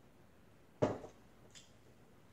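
A single dull knock close to the microphone a little under a second in, fading quickly, followed by a faint click.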